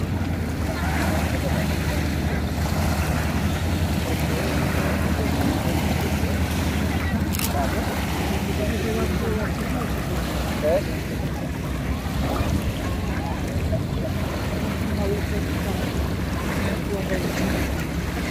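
Wind rumbling on the microphone over small waves lapping at a lake shore, with faint voices in the background and one short click about seven seconds in.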